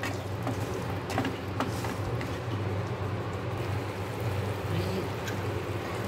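Wooden spatula stirring and scraping potato halwa in a nonstick kadhai as it cooks down to thicken, with a few light taps on the pan near the start, over a steady low hum.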